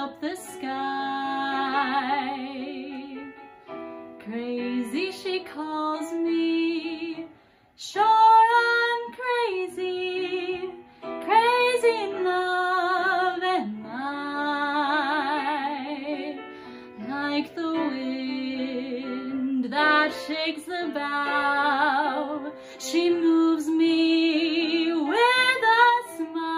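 A young woman singing a solo song in a trained musical-theatre style, holding long notes with wide vibrato between short phrases.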